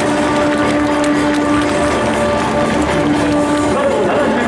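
Stadium PA music with long held notes, playing over the steady noise of a large crowd.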